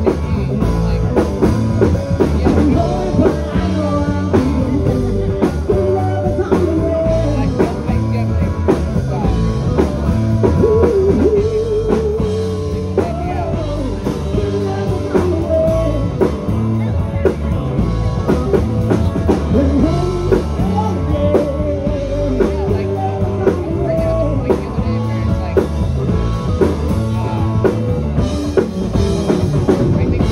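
Live rock band playing a song: electric guitars and a drum kit under a singer's vocal line.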